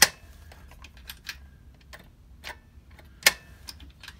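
Sharp, scattered plastic clicks from handling an old desk telephone's handset and the hook-switch cradle that turns the circuit-bent effects on and off. The loudest click comes right at the start and another about three seconds in, with a steady low hum underneath.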